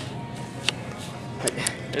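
Supermarket ambience: a steady low hum under faint background music, with a sharp click about a third of the way in and two more shortly before the end.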